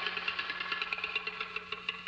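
Rapid, irregular clicking over a steady low hum on an old film soundtrack.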